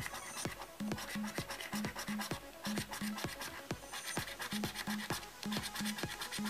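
A coin scratching the silver coating off a paper scratchcard, over background music with a steady beat of about two notes a second.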